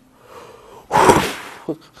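A man forcefully blowing out a breath: a faint intake early on, then a loud rush of air about a second in that lasts about half a second. It demonstrates the forced exhalation of a spirometry test.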